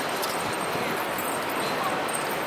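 Busy city street ambience: a steady wash of traffic noise with faint voices of passers-by.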